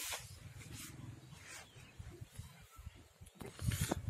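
Faint, uneven low rumble of wind and handling noise on a handheld phone microphone while the camera is carried.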